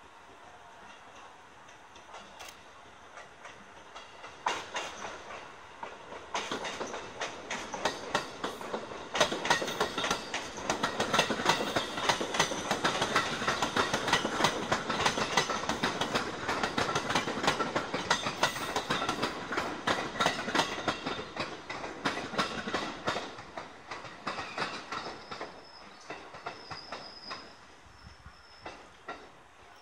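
Tobu 100 series 'Spacia' electric limited-express train pulling away and running past. Its wheels clack over rail joints in a dense, rapid rattle that builds from about four seconds in, is loudest through the middle, and fades away near the end.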